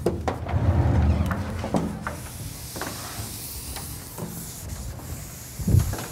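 Rubbing and scraping against a lecture board, strongest in the first two seconds, with a few light taps and one heavy low thump near the end.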